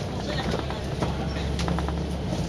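Volvo Olympian double-decker bus running on the road, heard from inside: a low engine drone that swells about a second in, with scattered clicks and rattles from the bus body and fittings.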